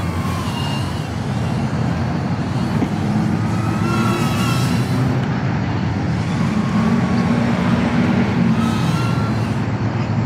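BETAFPV Air75 tiny whoop's small brushless motors whining, the pitch wavering up and down with the throttle, over a steady low rush of wind and road traffic.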